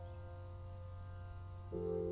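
Ambient meditation music: soft held tones over a low steady drone, with a new, louder chord coming in near the end. A steady high chirring layer like crickets runs beneath it.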